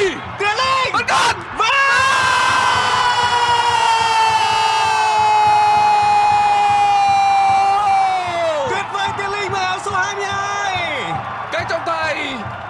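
A television football commentator's goal call: a few short shouts, then one long held yell of about seven seconds that sags slowly in pitch and falls away, followed by shorter excited cries, greeting a goal.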